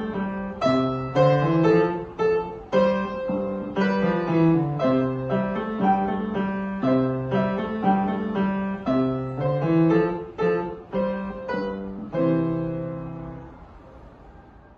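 Grand piano played four hands, struck notes in a steady rhythm. About twelve seconds in, the piece ends on a held chord that rings and dies away.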